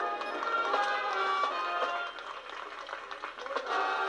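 High school marching band playing: sustained wind and brass chords over sharp drum strikes, dropping quieter after about two seconds and coming back in on a full held chord near the end. The recording is thin, with no bass.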